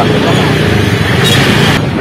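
A man speaking in an interview over a steady low background rumble, with a brief hiss about a second in.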